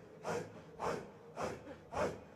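A circle of Qadiri dervishes chanting a breathed zikr in unison: forceful, breathy, rhythmic exhalations, about two a second, each falling in pitch.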